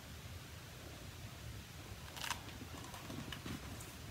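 Faint handling of a hardcover picture book: a short papery rustle about two seconds in, as when a page is turned, followed by a few lighter rustles and ticks, over a low steady room hum.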